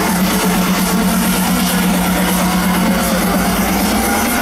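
Electronic dance music played loud over a festival sound system, here a steady held low synth note that breaks off near the end, under a wash of crowd and system noise.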